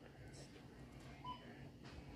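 Faint store room tone with a low steady hum, and one short electronic beep a little over a second in.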